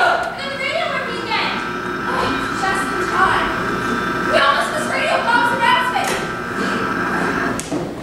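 Actors' voices speaking on a stage, distant and hard to make out, with a few dull thumps from props being handled.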